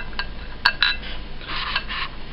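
Small opened-up microswitches being handled on a metal surface: a few sharp clicks and light clinks of their plastic bodies and metal tabs, one strong click a little over half a second in, then a short run of faint rattling near the end.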